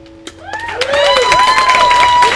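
The last acoustic guitar chord fades out, then about half a second in a small audience breaks into loud applause with cheers and whoops as the song ends.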